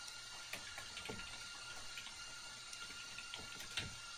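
Faint computer keyboard typing: scattered soft key clicks over a steady background hiss with a thin constant tone.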